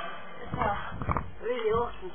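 A man's voice, unclear and close to the microphone, over low rumbling thuds as the webcam's microphone is bumped while he moves up against it.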